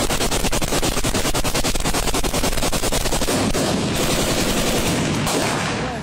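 Sustained rapid automatic gunfire, about ten shots a second without a break.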